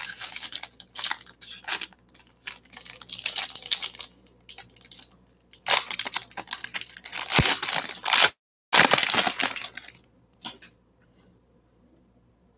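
Foil wrapper of a trading-card pack crinkling and tearing as it is pulled open by hand, in irregular bursts that stop about ten seconds in.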